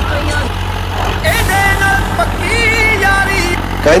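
Sonalika tractor's diesel engine running steadily while pulling a disc harrow through the soil. A sung or chanted voice line with held notes lies over it from about a second in.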